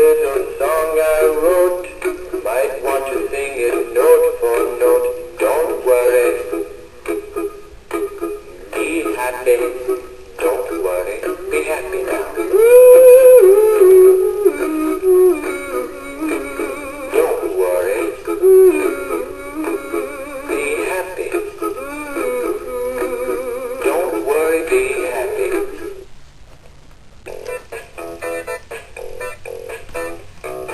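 Big Mouth Billy Bass animatronic singing fish playing its recorded song through its small built-in speaker, thin-sounding with no low end. The song stops near the end.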